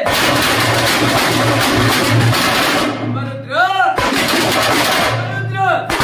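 Veeragase drumming: several stick-beaten drums played fast and loud together. In the second half a man's chanted call rises and falls twice over the drums.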